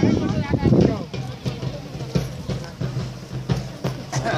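Crowd voices close by, loud in the first second, then a steady drumbeat at a few strokes a second with chatter underneath.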